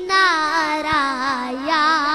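A boy singing an Urdu naat, unaccompanied, holding a long note with wide vibrato that slides slowly down in pitch and then rises a little near the end.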